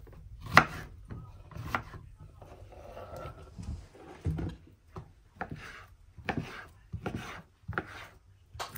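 Kitchen knife chopping cucumber on a wooden cutting board: sharp knocks of the blade against the board, the loudest about half a second in, with softer knocks and rubbing in between.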